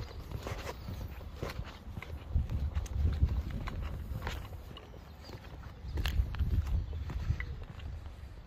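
Footsteps of a person walking on tarmac and then on block paving, irregular short steps over a steady low rumble.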